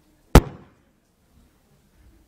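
A single sharp knock at the pulpit, close to the pulpit microphone, as something is set down on it, with a brief ring-out.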